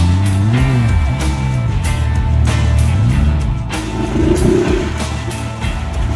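Background rock music with a steady beat, over a side-by-side UTV engine revving up and down a few times as it tries to drive out of the water.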